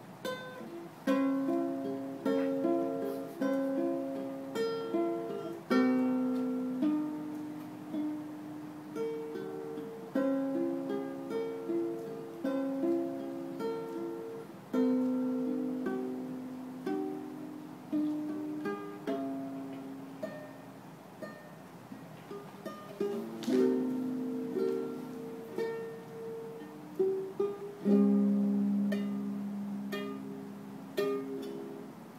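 A ukulele played solo: a slow melody of plucked single notes and chords, each left to ring out and fade.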